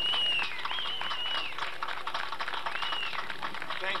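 Audience applauding, a dense crackle of clapping, with three long high whistles over it: one at the start, one about a second in and one near three seconds.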